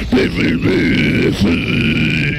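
Harsh screamed or growled metal vocals held over a distorted heavy metal backing, breaking off briefly about half a second in and again about a second and a half in.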